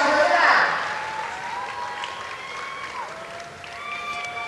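Audience applause in an arena that dies away within the first second, leaving a quieter stretch with a few faint held tones.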